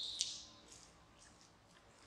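A single brief hissy scuff, like a shoe scraping gritty concrete, right at the start, then near silence.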